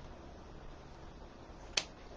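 A single sharp click near the end, over faint room tone.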